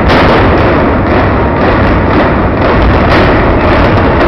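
Explosive demolition charges detonating in a rapid, irregular series during a stadium implosion, loud blasts about two or three a second that run together.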